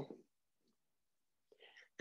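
Near silence between the lecturer's words, with a faint, brief sound just before speech resumes near the end.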